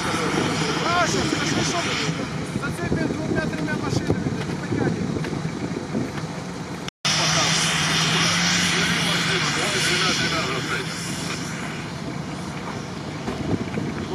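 Off-road vehicle engines running in a steady drone as one vehicle tows another through snow, with a brief break about seven seconds in.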